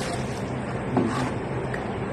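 Water sloshing and dripping as a soaked fire cloth is lifted out of a plastic bucket, with a brief splash about a second in, over a steady background hum.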